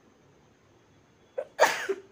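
Near-quiet room tone, then near the end a person sneezes once: a short intake followed by one loud explosive burst.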